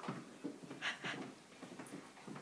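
People chugging drinks: quiet gulps and breaths, with two short louder breathy sounds about half a second and a second in.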